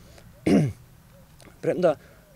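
A man clears his throat once, about half a second in, with a falling pitch. Near the end he starts to speak.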